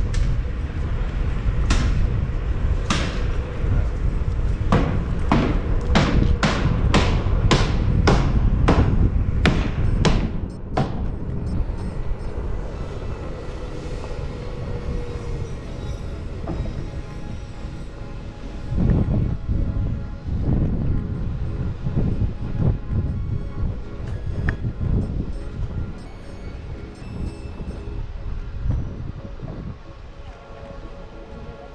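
Wind rumble on the microphone and rolling noise from a Onewheel GT electric board riding along a paved sidewalk. For the first ten seconds there is a run of sharp clacks about every half second; after that the ride sounds smoother and quieter.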